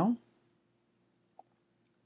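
Quiet room tone with a faint steady hum, broken by one short, soft computer mouse click about a second and a half in, as a formula is dragged down a column in a spreadsheet.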